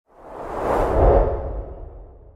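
Whoosh transition sound effect for an animated logo reveal. It swells out of silence to a peak about a second in, then fades away.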